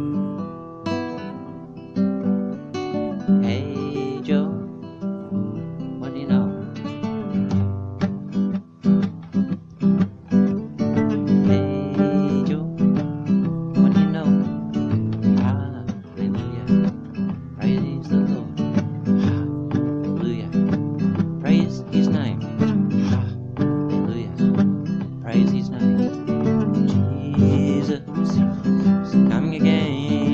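Acoustic guitar strummed, with a man's voice singing along.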